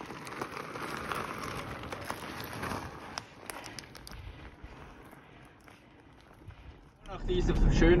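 Bicycle tyres crunching over a loose gravel track, fading away after about four seconds. About seven seconds in, a vehicle's engine and road noise start abruptly, heard from inside the cab.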